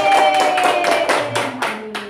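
A small group clapping hands, about four claps a second, while one voice holds a long, slowly falling note. The voice stops about a second and a half in and the clapping thins out near the end.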